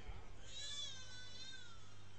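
A single faint, high-pitched wavering cry lasting a little over a second, starting about half a second in and dipping slightly in pitch at its end.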